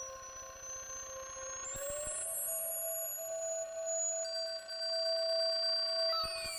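Electronic computer music made of long, steady pure tones that slide slowly in pitch. A middle tone glides up to a higher note about two seconds in, while a high tone rises steadily and another high tone enters a little after four seconds.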